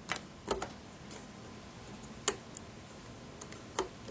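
Small, sharp clicks of a metal loom hook knocking against the plastic pins of a rubber-band bracelet loom as bands are worked off a pin, about five scattered clicks over a faint background.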